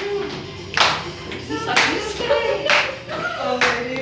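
Several people clapping their hands together in time, about once a second, along with music and singing.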